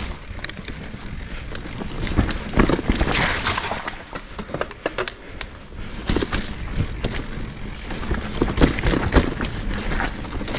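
Sonder Evol GX mountain bike ridden down a rough, muddy trail: tyres rolling over the dirt with frequent knocks and rattles from the bike. It grows louder about two seconds in and again near the end.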